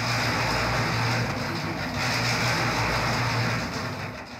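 ZUBR electric concrete mixer running with its drum turning: a steady whirring noise over a low motor hum.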